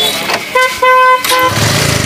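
Motorcycle horn honked three times, a short beep, a longer one and another short beep, followed by a low engine rumble.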